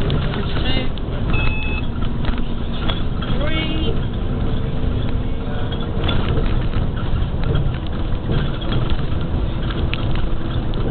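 Steady low rumble of a bus's engine and tyres heard from inside the bus, with scattered short rattles and knocks from the bumpy ride. There are a few brief high-pitched sounds in the first four seconds.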